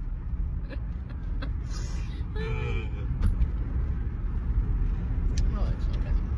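Steady low rumble of a car driving, heard from inside the cabin.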